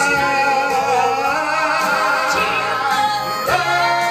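Gospel trio of two men and a woman singing long held notes in harmony over instrumental accompaniment, with a rising slide into a new note about three and a half seconds in.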